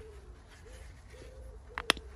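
A dove cooing in the background, a string of short low hoots at one pitch, over a steady low rumble; a single sharp click near the end is the loudest sound.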